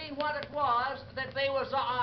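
A man's drawling voice telling a comic monologue, played from a shellac 78 record.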